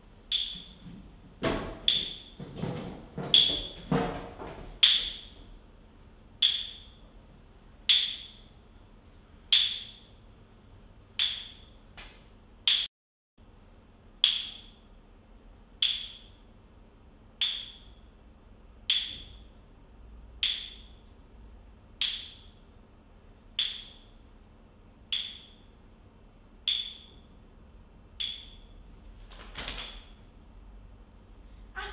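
Sharp percussive strikes, each with a short bright ringing tail: a quick cluster with deeper thumps in the first few seconds, then a slow, steady beat of about one strike every second and a half, growing slightly softer toward the end.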